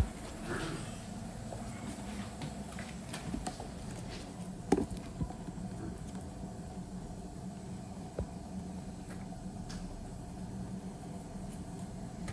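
Quiet workshop room tone with a low steady hum, broken by a few light clicks and taps as shoes and hand tools are handled on a cobbler's bench. The loudest tap comes about halfway through.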